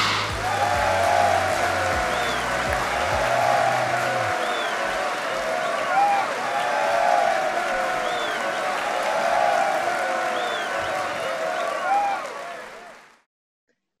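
Applause from a crowd, with music under it for the first few seconds, fading out about a second before the end.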